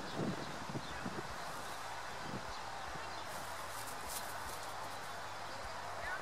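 Steady outdoor wind and rustle on the microphone, with a few soft thumps in the first second as a German Shepherd bounds away across the grass from close by.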